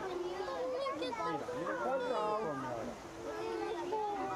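Several people's voices, children among them, chattering and calling, overlapping.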